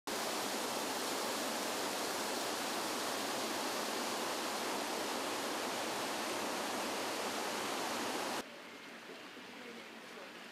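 Outdoor water feature splashing, a steady rush of falling water. It cuts off abruptly about eight seconds in, leaving fainter background ambience.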